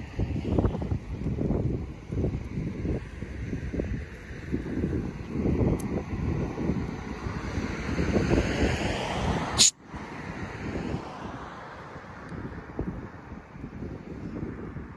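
Wind buffeting a phone microphone, with an uneven, gusty rumble. About ten seconds in there is a single sharp click, and after it the rumble is quieter.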